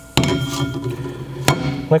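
Steel clutch disc clanking down onto a loose steel flywheel as it is flipped over, the metal ringing on for about a second after the first impact. A second sharp clink follows about a second and a half in.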